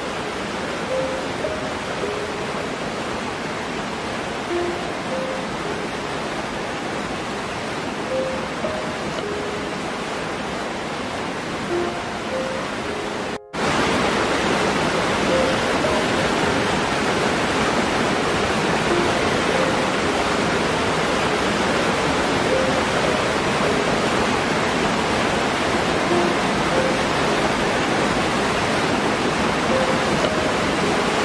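Steady rushing water of a small waterfall pouring into a rocky pool, with a soft, slow melody of sparse single notes faintly over it. A split-second gap about halfway through, after which the water is louder.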